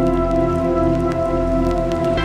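Melodic techno: sustained synth chords held over a low bass, with faint scattered clicks running through.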